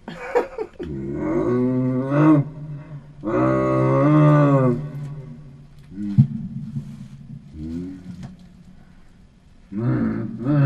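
A man's voice making drawn-out vocal noises into a handheld microphone, not words: two long ones in the first five seconds, then shorter ones, with a sharp click about six seconds in.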